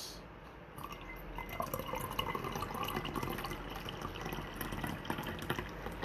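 Tea trickling in a thin stream from a small pouring vessel into a cup. It starts about a second in and runs on steadily.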